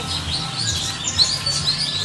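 Birds chirping busily: many short, high chirps following one another without a break, over a low steady hum.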